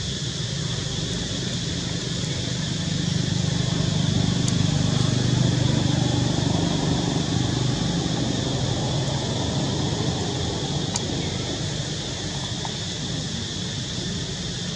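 Steady outdoor background noise with a low rumble that swells a few seconds in and fades again by about ten seconds.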